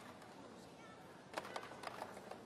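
A fast badminton rally heard faintly over a low arena background, with a quick cluster of three sharp taps of racket, shuttlecock and shoes on the court near the end.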